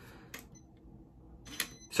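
Faint clicks from a Vaultek LifePod hard-shell lock box being handled at its keypad: a light click about a third of a second in and a sharper one near the end.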